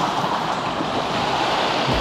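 Sea waves surging and washing over shoreline rocks, a steady rush of foaming surf: the swell of a passing ship's wake rolling in.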